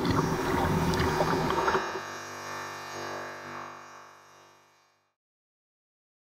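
Sea water lapping and splashing against a kayak's hull, with small knocks, for about two seconds; then the sound turns into a smeared, electronically processed ringing that fades out about five seconds in.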